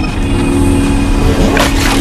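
Logo-reveal sound effect: a low whoosh over a steady held tone, swelling into a loud noisy rush about one and a half seconds in as the logo bursts apart.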